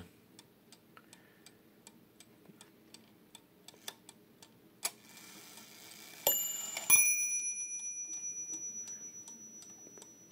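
Hampton crystal regulator mantel clock ticking faintly as its hand is turned, then striking its two bells once each, a higher stroke followed half a second later by a lower one, the two tones ringing on and slowly dying away.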